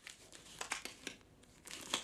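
Faint, scattered crinkling and light ticks of something crinkly being handled in the hands, a little louder near the end.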